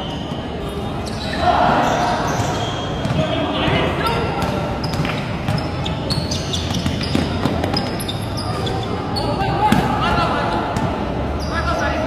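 Live basketball game sounds: the ball bouncing repeatedly on a hard court amid players' footwork, with players calling and shouting to each other.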